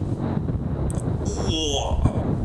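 Motorcycle riding, with a steady low engine rumble and wind rushing over the helmet camera's microphone. A short voice sound cuts in over it in the last second.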